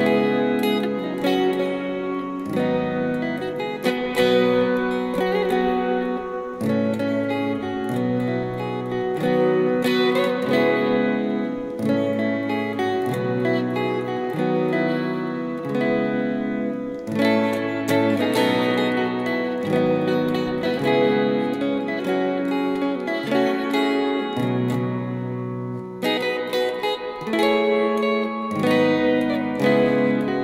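Yamaha Pacifica electric guitar playing a solo chord-melody arrangement through a Yamaha THR5 amp: plucked chords and a melody over a bass note that changes about once a second.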